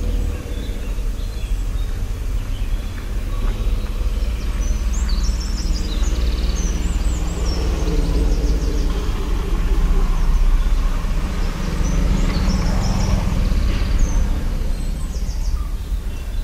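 Outdoor village ambience: small birds chirping repeatedly over a steady low rumble. A broader noise swells through the middle and fades again near the end.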